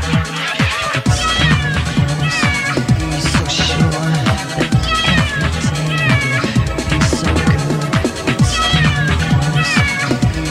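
Electronic dance music with a steady kick drum and a bassline. Short, high notes that slide in pitch repeat about once a second over the beat.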